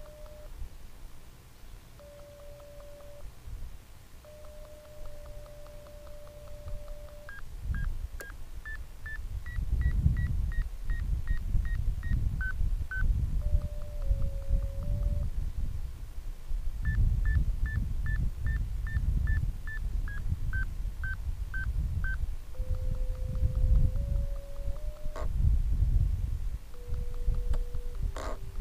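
Electronic tones from an RC glider transmitter's telemetry variometer. A steady low tone steps in pitch and breaks off, then two runs of short high beeps, about two a second, step up and then down in pitch, the vario's signal that the glider is climbing in lift. The low tone returns near the end, and wind buffets the microphone from about eight seconds in.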